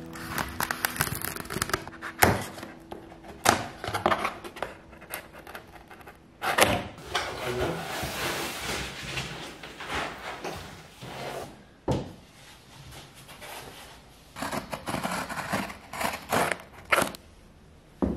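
Cardboard packaging of a flat-pack bookshelf being torn open and handled: scattered knocks and scrapes of cardboard, a longer stretch of rustling and sliding in the middle, and a sharp knock about twelve seconds in.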